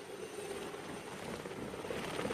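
Helicopter flying, its rotor making a rapid, even chop that gets louder.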